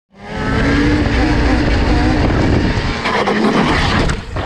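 Yamaha Banshee's two-stroke twin engine running hard at high revs, its pitch wavering, with heavy wind noise on the microphone; in the last second the sound turns rougher and noisier as the quad goes over backwards in a wheelie.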